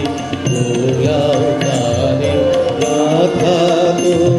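A man singing a devotional-style Indian song with an ornamented, wavering melody, accompanied by a harmonium playing sustained chords.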